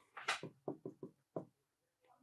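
A pen tip tapping and scraping on an interactive touchscreen board as a word is handwritten: about six short, faint taps in the first second and a half.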